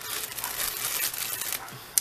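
Crinkling and rustling of thin plastic film as nail transfer foils and their packaging are handled, dying down shortly before the end.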